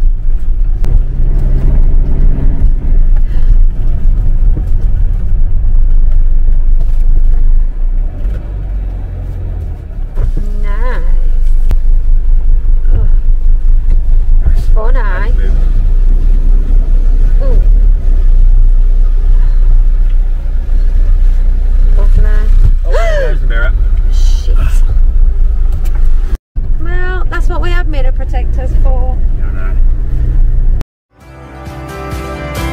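Motorhome engine and road noise heard from inside the cab while driving: a loud, steady low rumble, with brief snatches of voices over it and a short cut-out about three-quarters of the way through.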